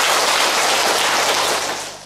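Applause from a large seated audience, steady and then dying away near the end.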